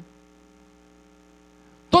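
Faint, steady electrical mains hum from the sound system: several steady tones held together without change. A man's voice comes in at the very end.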